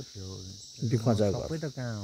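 A steady high-pitched chorus of insects, with a man's voice talking over it in the foreground, louder in the second half.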